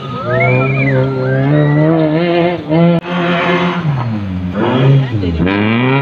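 Race car's engine revving hard on a dirt track, its revs rising and falling repeatedly, with a sharp drop and quick climb again near the end.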